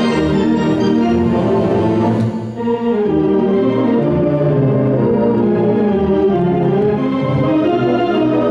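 Theatre organ playing full, sustained chords over a strong bass line, with a brief break in the sound about two and a half seconds in before the chords resume.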